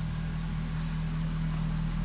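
2006 Chevrolet Corvette's 6.0-litre LS2 V8 idling steadily through an aftermarket Borla exhaust: a low, even rumble.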